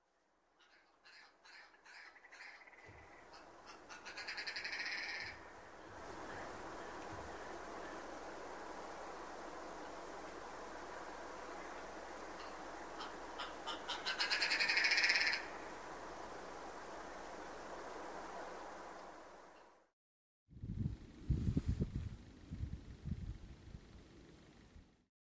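Red grouse calling twice, about ten seconds apart: each call is a run of clucks that quickens and ends in a louder rattling burst. A steady hiss lies under the calls. Near the end, after a short break, a low rumble comes over the microphone.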